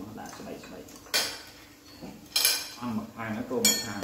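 Metal spoon and chopsticks clinking against plates and bowls during a hot-pot meal: three sharp clinks about a second apart, with low voices in between.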